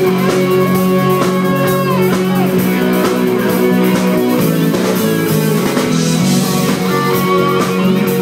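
Live pop-rock band playing an instrumental break: a held, bending lead guitar melody over drums and keyboards, with no singing.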